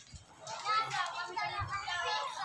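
High-pitched voices talking, beginning about half a second in.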